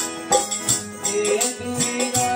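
Harmonium playing sustained chords and melody, with a man's voice singing over it and a rattling hand percussion keeping a regular beat.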